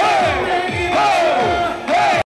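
Live pop dance track with male group vocals shouted and sung over a heavy beat, about two low drum hits a second.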